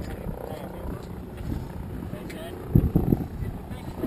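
Low steady hum of a motor tender's engine, with wind buffeting the microphone, loudest about three seconds in, and faint distant voices calling across the water.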